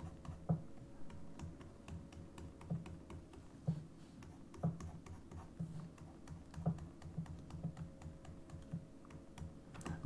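Quiet, irregular light taps and clicks, roughly one a second, from a pen stylus on a graphics tablet as sculpting brush strokes are drawn, over a faint steady hum.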